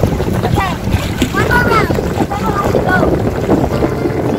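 Wind buffeting the microphone in a steady low rumble, with a child's high-pitched wordless calls that rise and fall a few times in the middle.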